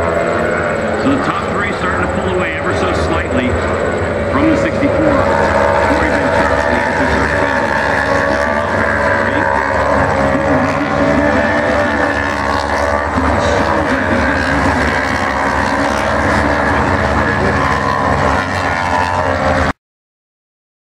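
Several racing motorcycle engines running hard through a corner, their pitch rising and falling as the riders work the throttle and change gear, with the sounds of more than one bike overlapping.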